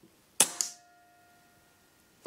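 PCP air rifle firing a single shot, a sharp crack about half a second in. A faint ringing tone hangs on for about a second after it.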